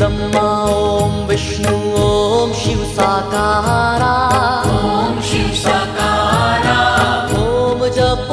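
A man singing a devotional Hindu chant to Shiva (a dhun), with melodic instrumental backing and a steady beat.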